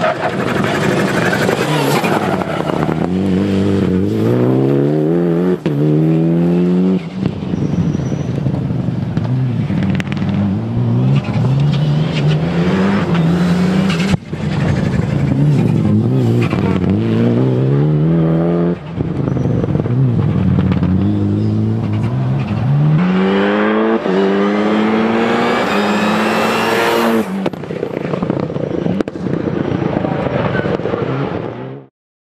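Mitsubishi Lancer Evolution rally car's turbocharged four-cylinder engine accelerating hard through the gears over several passes. Each time its pitch climbs, then drops back briefly at an upshift.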